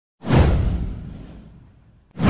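One cinematic whoosh sound effect with a deep low boom, coming in sharply just after the start, falling in pitch and dying away over about a second and a half.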